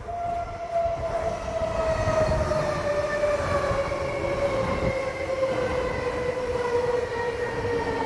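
Electric commuter train pulling in alongside the platform: a motor whine that falls slowly and steadily in pitch as the train slows, over the rumble of wheels on the rails.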